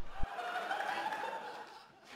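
Sitcom studio audience laughing, the laughter fading away, with a short low thump just as it begins.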